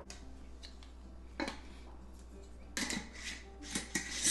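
Glass mason jar being handled and its lid screwed on: a single click, then a short run of scrapes and clicks about three seconds in and near the end.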